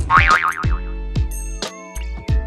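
Edited-in comic music cue: a wobbling, springy boing tone at the start, then deep drum hits about half a second apart, each dropping in pitch.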